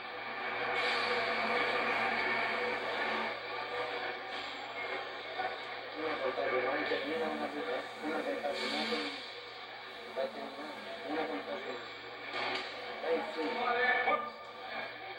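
Indistinct voices and crowd chatter from a gym full of boxing spectators, heard from an old videotape through a TV speaker, over a steady low hum.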